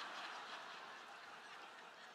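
Faint audience laughter in a large hall, dying away slowly.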